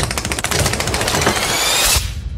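A rapid, rattling run of clicks with a whine rising in pitch over the second half, cutting off suddenly at the end: a transition sound effect in a movie trailer's soundtrack.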